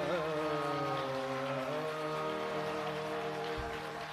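Hindustani classical singing with tanpura drone and harmonium. The voice glides at the start, then holds a long note that dies away, with faint scattered applause and a single low tabla stroke near the end.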